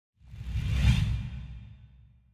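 A whoosh sound effect over a deep rumble for a logo reveal, swelling to a peak about a second in and then fading away.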